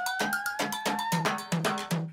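Outro music: a steady percussive beat of about four hits a second over a repeated low bass note, with a sustained synth tone slowly gliding upward.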